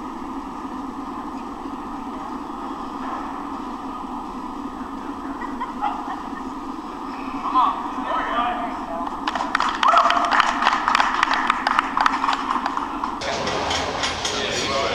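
Steady gym-hall hum with voices. A few shouts come in about seven seconds in, then rapid clapping and cheering from about nine seconds in, the crowd's reaction to a successful barbell squat. It cuts off suddenly near the end.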